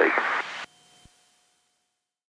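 The last word of an aircraft radio call, heard through the intercom with a steady hiss. It cuts off suddenly about two-thirds of a second in, leaving near silence.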